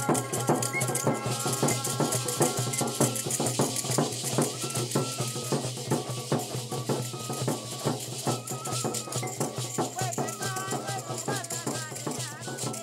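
Background music: a steady percussion beat of about three strokes a second under held melodic notes, with a wavering melodic line near the end.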